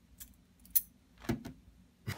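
A bunch of metal keys on a split ring clinking in the hand, a few short sharp clicks with the loudest a little under a second in.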